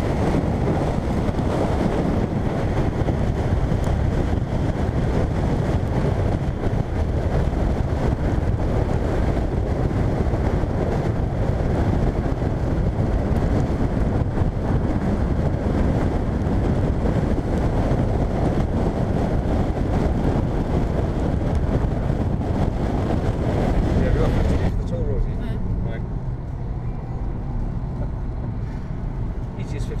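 Car driving on a wet road, heard through an outside-mounted camera: a steady rush of wind on the microphone over tyre and road noise. About 25 seconds in it cuts to the duller, quieter hum of the car heard from inside the cabin.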